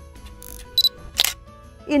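Camera shutter sound effect over soft background music: a short high beep, then a sharp shutter click just after a second in.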